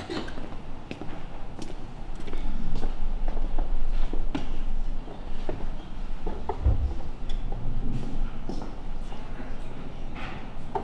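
Footsteps and scattered knocks on a wooden stage floor during a scene change, with faint voices and a low rumble that comes in about two seconds in.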